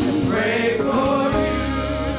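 Gospel choir singing, a lead voice wavering in a wide vibrato. About halfway through, steady held keyboard or organ chords with a bass line come in under the voices.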